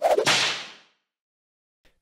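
A sharp, whip-like swoosh transition sound effect that starts suddenly and fades away in under a second.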